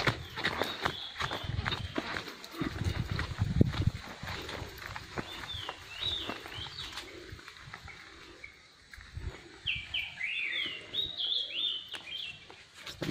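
Footsteps crunching along a leafy forest trail, with a loud low bump on the microphone about three seconds in. In the second half a bird calls in quick runs of short sliding chirps.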